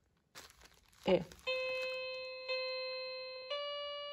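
Rainbow Keyboard musical floor mat's speaker playing three electronic notes, each held about a second: two at the same pitch, then one a step higher that fades away. This is its 'Memory' mode playing a tune that, as she guesses, the player is meant to repeat by stepping on the keys.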